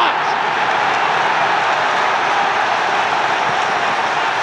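Stadium crowd cheering a home goal just scored, a loud, steady wall of noise.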